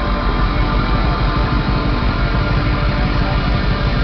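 Heavy metal band playing live: distorted electric guitars over rapid, bass-heavy drumming, loud and dense throughout.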